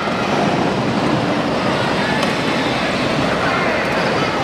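Steady, echoing din of an indoor arena: children's battery-powered ride-on toy cars driving over a dirt floor, mixed with background crowd voices.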